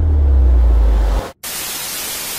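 A loud, deep rumble holds for about a second and cuts off abruptly. After a brief silence, television static hiss comes in and runs on.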